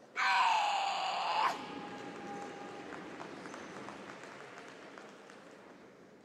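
A female karateka's kiai during a kata: one loud, high shout of just over a second, falling slightly in pitch, cut off sharply and echoing on in a large hall for a few seconds.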